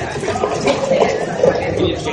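Indistinct voices of several people talking at once, with no clear words.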